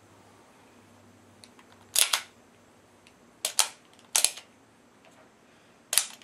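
Sig Sauer 1911 Scorpion pistol being racked by hand on an empty Wilson Combat 47D magazine: sharp metal clacks of the slide cycling and locking back, four of them, some doubled, from about two seconds in.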